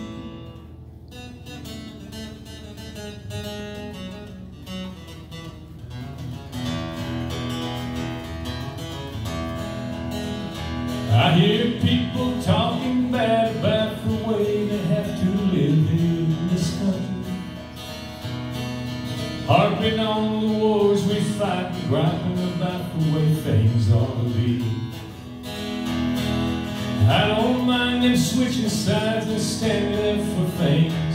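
Acoustic guitar strummed through a PA, played softly at first. A man's singing voice comes in about eleven seconds in and carries on in phrases over the guitar.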